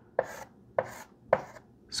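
Chalk striking and scraping on a blackboard as symbols are written: three short, sharp strokes about half a second apart.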